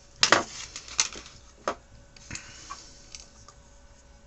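Handling noise as a circuit board is turned over inside a metal chassis: a few sharp clicks and knocks, the loudest about a quarter-second in, then smaller ones spaced out and fading.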